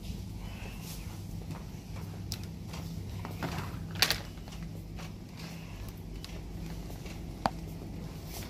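Supermarket ambience: a steady low hum, with two sharp clicks close together about halfway through and one more near the end.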